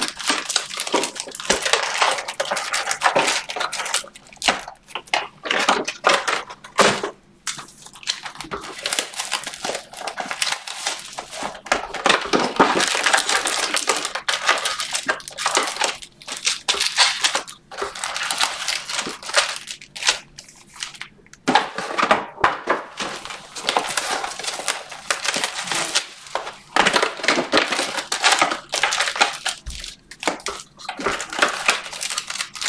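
Panini Optic football card pack wrappers crinkling and tearing as packs are ripped open by hand, with the cards handled and stacked, an irregular crackle throughout.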